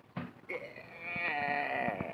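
A man's long excited whoop, held for about a second and a half and dipping in pitch near the end.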